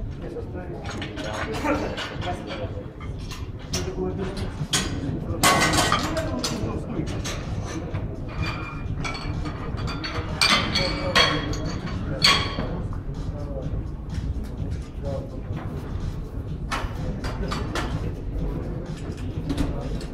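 Scattered metal clinks and knocks of barbell plates and collars being handled on a bench-press bar as the weight is changed, over a background of voices in a large hall. The clinks are loudest about five seconds in and again around ten to twelve seconds.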